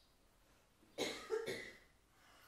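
A person coughing: a short fit of two quick coughs about a second in.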